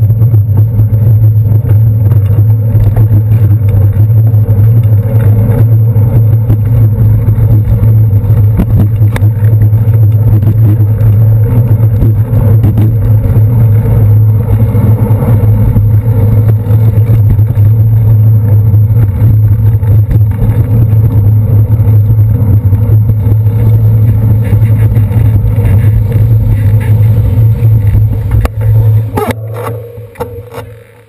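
Loud, steady low rumble of wind and road vibration on a handlebar-mounted GoPro Hero 2 on a moving bicycle, with city traffic around it. The rumble falls away sharply near the end as the bike comes to a stop.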